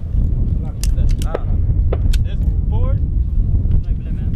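Wind buffeting the microphone in a loud, uneven low rumble, with snatches of men talking and a few sharp clicks.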